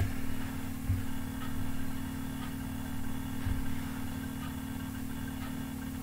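Steady low machine hum with a couple of faint low thumps, about a second in and midway.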